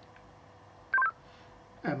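Motorola DM4600 DMR mobile radio sounding its brief talk-permit tone about a second in, a quick run of a few stepped beeps, as the push-to-talk is keyed to transmit.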